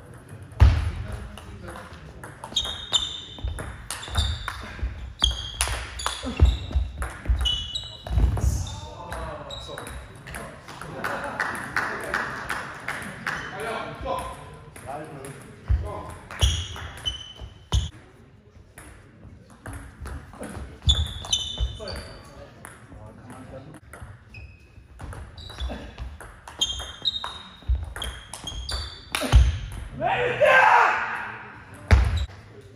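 Table tennis rallies: the plastic ball clicking sharply off bats and table in quick runs, each hit with a short ping, with pauses between points.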